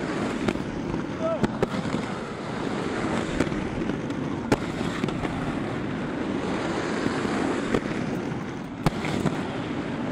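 Inline skate wheels rolling over rough street asphalt: a steady rolling rush with sharp clicks every second or so.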